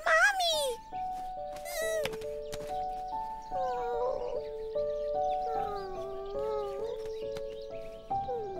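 A lynx's short, falling mew-like call, as voiced for a cartoon, opens the sound, and a second short call follows about two seconds in. Soft background music with held notes then carries on.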